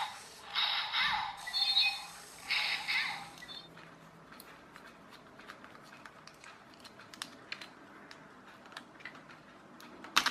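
Small toy robot's electric motor and gearbox whirring in three short spurts over the first three seconds, a toy thought to need new batteries. After that come faint small clicks and scrapes of a small screwdriver working the screws of its plastic battery cover.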